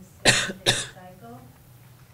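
A person coughing twice in quick succession, loud and close to the microphone, within the first second.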